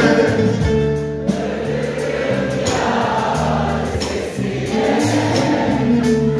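Live band music with singing, a Turkish folk-pop concert played through a hall's PA, with drums keeping a steady beat under the melody.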